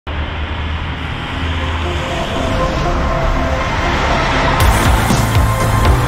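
A motor coach running, its engine and road noise growing louder as it comes closer, with music fading in over it about halfway through and sharp drum hits near the end.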